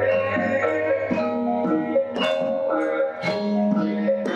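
Javanese gamelan ensemble playing: bronze metallophones and gong-chimes struck with mallets in a steady flow of ringing notes, with a low gong tone fading out about a second in.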